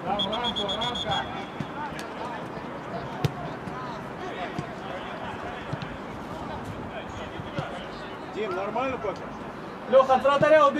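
A referee's whistle blown once at the start, a trilling high tone lasting about a second, over players shouting on the pitch. A couple of sharp knocks follow a few seconds later.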